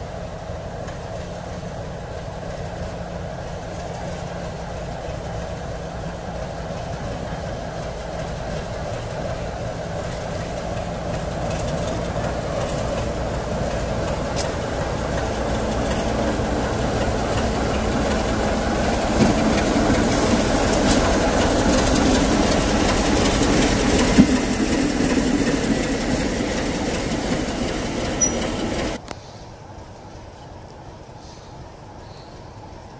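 Class 33 'Crompton' diesel locomotive's Sulzer eight-cylinder engine running as the locomotive moves slowly, growing steadily louder as it approaches and passes close by. There is a sharp knock about three-quarters of the way through, and the sound cuts off abruptly near the end.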